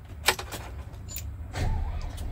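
DAF CF truck's diesel engine idling, heard from inside the cab as a steady low rumble. The rumble swells briefly near the end, and a few sharp clicks sound over it, the loudest about a quarter second in.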